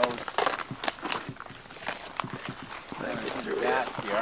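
Footsteps on a rocky trail through low conifer scrub: irregular light clicks and scuffs, with some rustling of branches. A man's voice speaks briefly at the start and again near the end.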